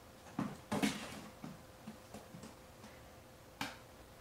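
A few light clicks and taps from a kitten moving about on a wooden cabinet top: two close together about a second in and one more near the end, over quiet room tone with a faint steady hum.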